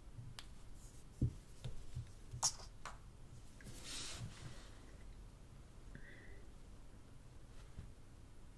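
Faint handling noise of two iPhone 5S phones being held and switched off: a few light clicks, a low thump a little over a second in (the loudest sound), and a short hiss around four seconds in.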